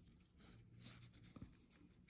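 Near silence, with faint scratching of a felt-tip marker on paper and one small tap about one and a half seconds in.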